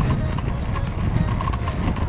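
Wind buffeting the microphone, with a quick run of regular light clicks from a measuring wheel being pushed along the pavement.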